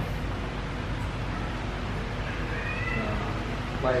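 Faint, drawn-out cat-like meows, gliding up and down in pitch, a couple of seconds in, over steady room noise.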